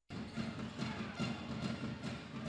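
Basketball gym ambience: music playing over the arena sound system under the general noise of play on the court. The sound drops out for a split second at the very start.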